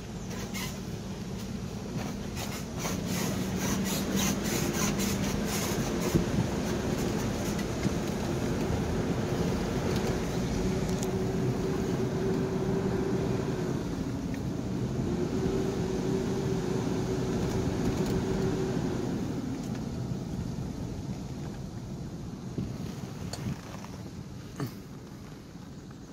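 Car driving slowly along a dirt track, heard from inside the cabin. The engine runs with a steady note and the tyres crunch over the track. The engine note dips briefly about halfway through, then fades over the last few seconds as the car slows.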